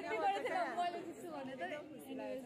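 Indistinct chatter of several young people talking at once in a classroom, with no single clear voice.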